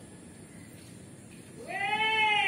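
A cat meows once near the end, a single call about a second long that rises and then falls in pitch, much louder than the faint background before it.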